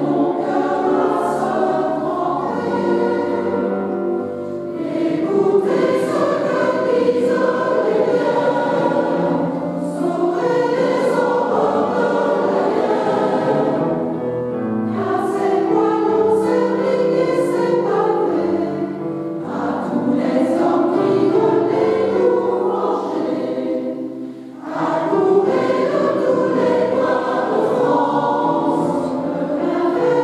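Mixed choir of men's and women's voices singing in sustained phrases in a church. Short breaks between phrases come about 4, 14, 19 and 24 seconds in.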